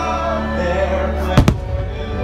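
Orchestral fireworks-show music playing, with two sharp firework bangs in quick succession about one and a half seconds in.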